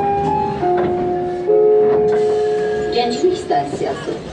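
Baku metro station melody for Gənclik station: a slow electronic chime tune of a few long held notes stepping up and down in pitch, over a low train rumble. A voice begins near the end.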